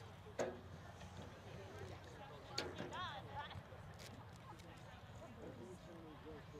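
Distant voices calling out across an open field, with one louder shout near the middle. Two sharp knocks, about half a second in and again near the middle, stand above a steady low rumble.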